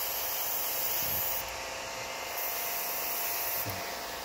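Gravity-feed airbrush hissing as it sprays orange paint onto a plastic model car body, in two spells of a second or so with a short break between, as the trigger is pressed and released. A faint steady hum runs underneath.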